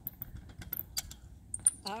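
Small kick scooter rolling down a ridged concrete curb ramp: its wheels and deck rattle with a run of irregular sharp clicks over a low rolling rumble.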